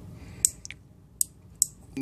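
Small rotary knob switch on an ionic air purifier's circuit board clicking as it is turned by hand: about four light, sharp clicks. It is an on-off switch built in the form of a potentiometer.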